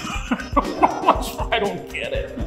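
A man laughing in a few short, sharp bursts, about half a second to a second in.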